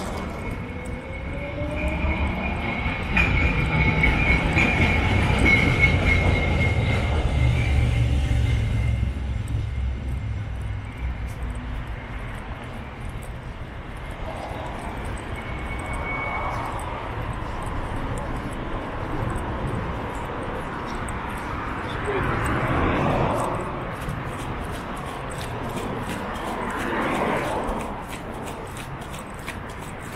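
City street traffic. A heavy vehicle passes in the first several seconds, a low rumble with a high steady whine or squeal over it. After that, quieter traffic with a few more vehicles going by.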